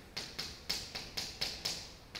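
Buttons being pressed on a handheld electronic calculator: a quick, fairly even run of light plastic key clicks, about four a second.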